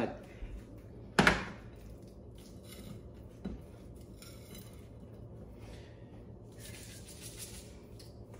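A metal platter set down on the stove with a sharp clank about a second in, then the ribeye steaks handled and a dry-rub seasoning jar shaken over them in several short rattling bursts.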